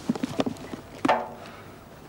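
Handling knocks and clicks from a motorcycle's leather saddlebag being opened and rummaged: a few short knocks, then a louder clack with a brief ring about a second in.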